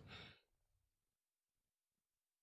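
Near silence, after a faint exhale in the first moment.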